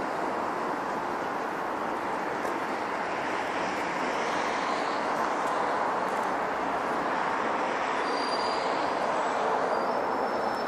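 Steady noise of passing city transport, swelling slightly midway, with a faint high whine near the end.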